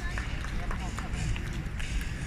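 Busy city street ambience: a steady low rumble of traffic and wind, with faint, scattered voices of passers-by and a few light clicks.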